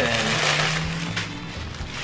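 Plastic mailer packaging rustling and crinkling as a plastic-bagged garment is pulled out and handled, loudest in the first second, over background music with low sustained notes.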